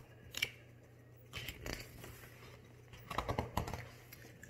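Pages of a picture book being turned and handled: a light click, then soft rustles of paper.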